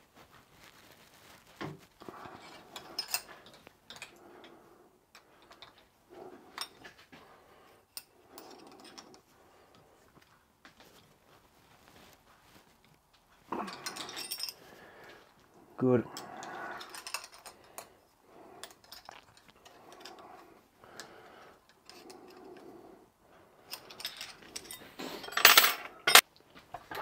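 Scattered light metallic clinks and taps of small hand tools: an Allen key working the socket screws of a shaft coupling, and tools picked up and put down on the workbench. There is louder clatter around the middle and just before the end.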